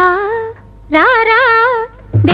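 A female voice singing Carnatic-style phrases unaccompanied, the held notes bending and wavering in ornaments, in two phrases with a short break between them.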